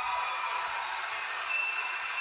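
Studio audience applause and crowd noise from a television broadcast, heard through the TV's speaker, with a faint steady high tone running through it.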